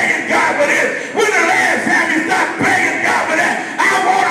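A man praying loudly in tongues into a microphone, his voice amplified through a PA in phrases of a second or so with short breaks between them.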